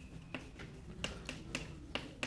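Chalk writing on a blackboard: a string of light, sharp taps, several a second, as letters are stroked onto the board.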